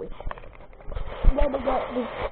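Camera handling noise: a few sharp knocks and rubbing as the camera is moved about and briefly covered, with a faint voice near the end.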